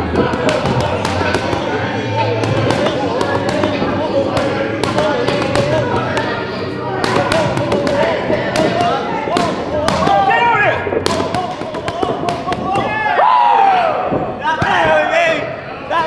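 Boxing gloves smacking focus mitts in quick combinations of sharp strikes, over voices in a gym. The strikes thin out after about twelve seconds, leaving mostly voices.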